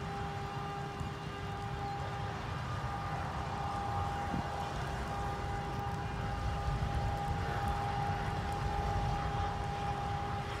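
Low rumble of roadside traffic and wind on the microphone, with a steady high-pitched tone and a fainter lower tone running under it.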